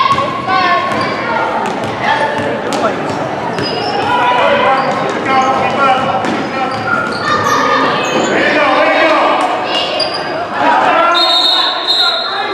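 Shouting voices of players and spectators over a basketball bouncing on a hardwood gym floor, echoing in the hall. A referee's whistle sounds briefly about eleven seconds in.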